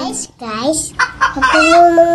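A rooster crowing: a few short rising notes, then one long wavering call held through the end.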